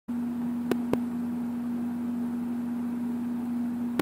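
Steady low electrical hum with background hiss on the recording line, holding one unchanging pitch. Two small clicks within the first second.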